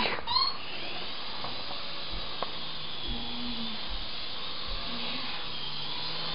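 Small electric motors and rotor blades of a toy infrared RC Apache helicopter whirring steadily in flight.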